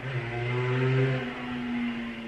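Background music with slow, sustained notes: a low note that stops a little over a second in, overlapping a higher note that holds on.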